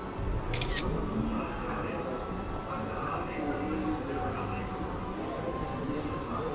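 Indistinct background voices over faint music, with a quick cluster of sharp clicks about half a second in.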